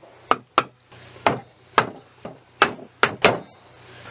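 A hammer knocking a wooden crosspiece down into a tight interlocking mortise-and-tenon joint on top of a timber post. There are about eight sharp knocks of wood being struck, unevenly spaced.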